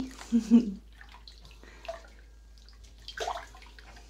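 Shallow bathwater in a bathtub sloshing and dripping as a small wet dog moves about in it, with a brief louder slosh about three seconds in. A woman laughs loudly at the start.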